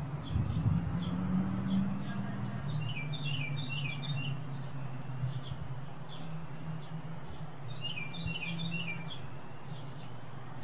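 Birds chirping in short clustered bursts, once about three seconds in and again near eight seconds, over a steady low hum.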